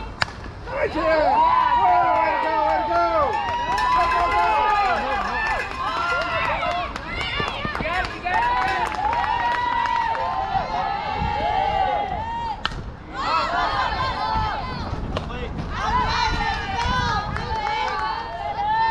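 A single sharp crack right at the start, a softball bat meeting the pitch, then players and spectators yelling and cheering in many overlapping voices as a run scores, the shouting easing off around twelve seconds in and rising again just after.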